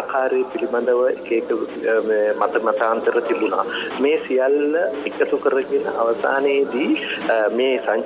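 Speech only: a person talking steadily in a radio talk broadcast.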